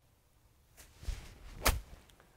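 A 50-degree golf wedge swung through rough grass: a short swish building up, then one sharp crack as the clubface strikes the ball a little before the end.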